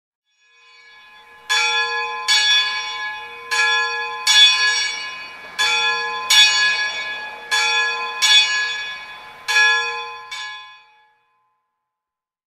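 A church bell struck in pairs, five pairs about two seconds apart, each strike ringing on with many overtones and the last dying away near the end.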